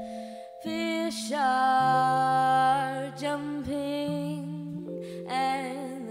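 Small live band playing a slow ballad: held low keyboard chords under a sustained melody line that slides up into its notes, with no sung words.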